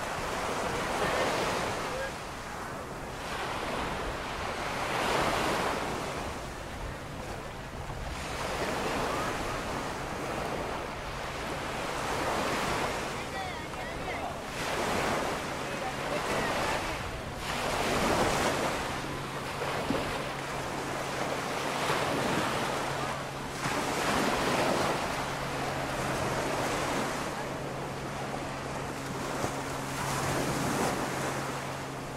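Small surf breaking and washing up a sandy beach, swelling every few seconds, with wind on the microphone. A steady low hum joins about halfway through.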